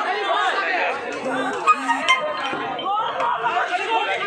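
Crowd of protesters, many voices talking and shouting over one another, with two sharp clinks near the middle.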